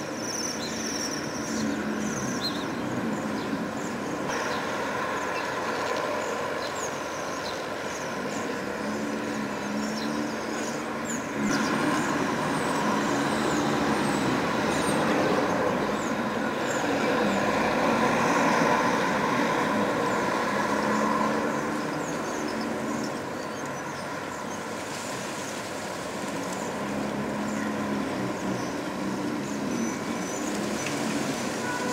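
Passing road traffic: engine hum that rises and fades several times, with a louder stretch through the middle as vehicles go by. Faint high bird trills come through now and then.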